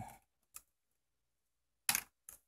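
A faint tick, then near the end one sharp plastic click as a circuit board is worked free of the small retaining clips in a TV's plastic bezel.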